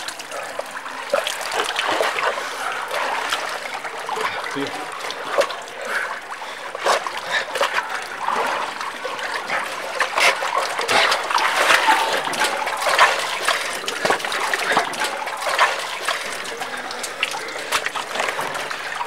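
Swimmers splashing in canal water close by: a steady run of splashes and sloshing.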